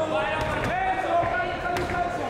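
Men's voices shouting from ringside, with two sharp thuds of kickboxing strikes landing, about half a second in and near the end.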